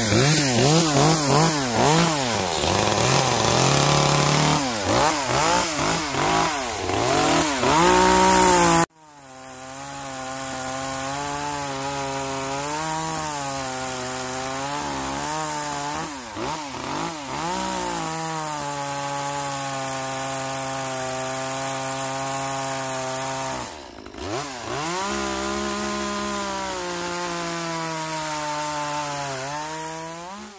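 Small gas chainsaw running and cutting into a wooden log, its engine revving up and down under the throttle. About nine seconds in the sound breaks off abruptly, and the saw continues at a steadier, quieter pitch with brief dips.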